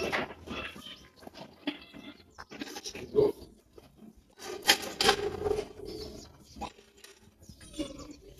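Metal buckets knocking as they are lifted and set down on a tiled floor during mopping, with a couple of short calls and a sharp knock about five seconds in.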